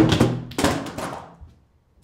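A loud thud right at the start, then a few more knocks and thuds as a person gets up from a seat and walks off. They die away after about a second and a half, and the sound cuts off.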